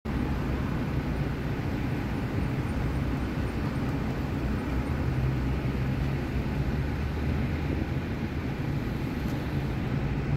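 Steady low rumble of street traffic, an even background drone with no distinct events.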